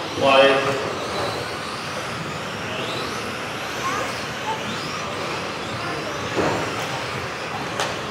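Radio-controlled model racing cars running laps on an indoor track, a steady whirring hum with motors rising in pitch now and then as the cars accelerate, and a couple of sharp knocks near the end.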